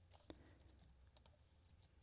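Near silence with a few faint computer keyboard and mouse clicks, the clearest about a third of a second in.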